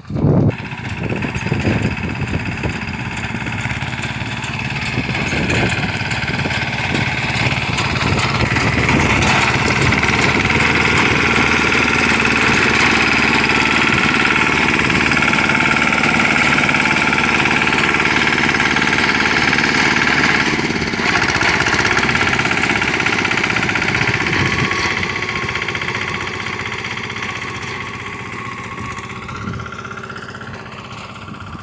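Tractor-mounted reaper binder running as it cuts a standing grain crop and drops tied sheaves: a steady engine sound with machine noise. It grows louder over the first several seconds as the machine comes close, and fades over the last few seconds as it moves away.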